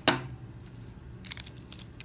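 A sharp clack as a pair of scissors is set down on a tabletop, followed by faint crinkling of folded copy paper being handled and opened.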